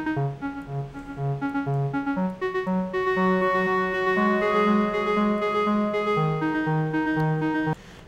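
MDA DX10 FM software synth playing its bright electric-piano preset with a very clean tone: a run of short notes, about four a second, then from about two and a half seconds in longer held notes, stopping suddenly just before the end.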